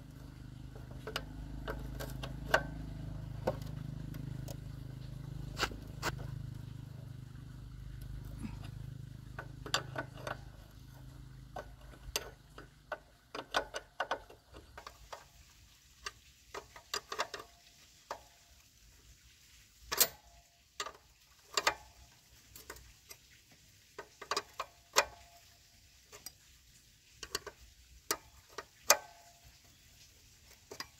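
Open-end wrench clicking and clinking against the nuts of a Honda motorbike's rear drum brake as they are worked loose, in irregular sharp metallic ticks. A low rumble underlies the first dozen seconds, then fades.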